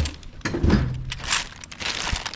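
Zip-top plastic bag crinkling in gloved hands, with the small plastic containers inside shifting, in irregular bursts strongest in the first half. A sharp knock right at the start.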